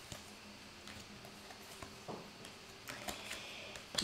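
Quiet room tone with a few faint, scattered ticks as tarot cards are drawn and laid out.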